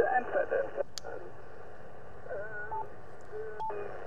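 Yaesu FT-710's speaker playing a faint, noisy 40 m single-sideband voice signal received on the JPC-12 antenna. The narrow, telephone-like audio has a steady bed of band noise. The audio briefly drops out with a click about a second in, and again near the end as the receiver is switched over to the loop-on-ground antenna.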